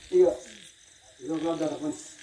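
A performer's voice in two short utterances: a brief one at the very start and a longer one in the second half, with quiet gaps between.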